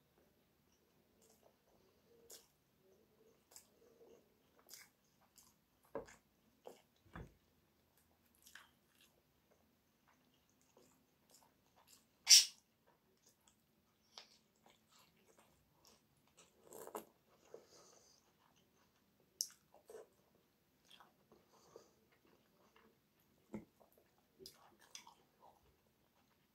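Close-up mouth sounds of a person eating soft food, a meat cutlet and stewed peppers: scattered wet smacks and soft chewing clicks. One much louder sharp click comes about halfway through.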